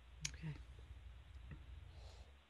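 Faint room sound on an open microphone: a low steady hum with a sharp click about a quarter-second in and a fainter click at about a second and a half.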